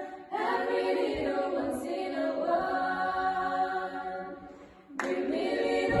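Women's choir singing a cappella in a reverberant hall: a phrase begins just after the start, thins and fades near the end, and the full choir comes back in suddenly about five seconds in.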